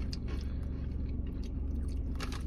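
A person chewing protein chips, a few faint dry crunches over a steady low hum.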